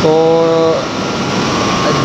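Steady, even running noise of a hydroelectric turbine unit in its powerhouse, with a faint steady whine. A man's voice holds a drawn-out word over it for the first moment.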